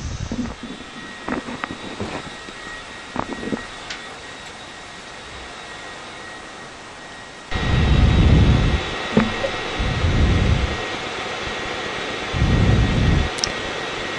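Steady whir of the space station's cabin ventilation, with a few faint clicks in the first few seconds. About halfway through the noise steps up, and three low rumbles of about a second each follow as the astronaut moves through the hatch with her headset microphone.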